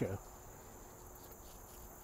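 Faint, steady, high-pitched chirring of insects in summer foliage, unchanging throughout.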